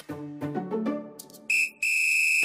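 Background music, then two loud, steady, high-pitched electronic beeps from about one and a half seconds in: a short one, then a longer one.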